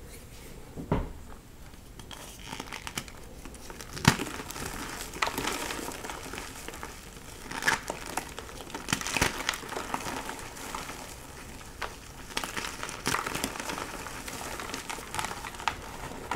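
Hands squeezing and crumbling soft gym chalk blocks in a bowl of loose powder: a steady crunching crackle, with sharper cracks now and then as pieces break apart.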